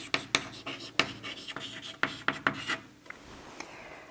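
Chalk writing on a blackboard: a quick run of taps and scratches as each stroke is made, stopping about three seconds in.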